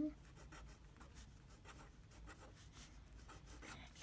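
Pen writing on a paper worksheet: faint, irregular scratches of short handwriting strokes.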